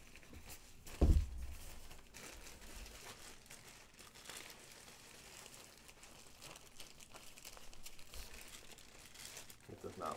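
Plastic bag crinkling and rustling as it is handled and pushed down into a cardboard box, with one dull, loud thump about a second in.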